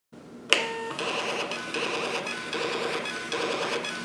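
DYMO LabelWriter 450 thermal label printer printing a run of four barcode labels. A sharp click about half a second in is followed by the steady, stuttering whir of the printer feeding the labels through.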